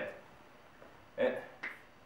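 Quiet room tone for about the first second, then a short voice sound, and just after it a single sharp click of chalk tapping against the blackboard.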